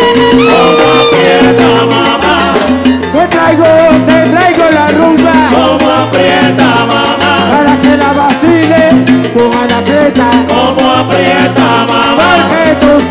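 Live salsa orchestra playing an instrumental passage of a rumba: a stepping bass line, keyboard and hand percussion (timbales, congas) under melodic lines, with no vocals.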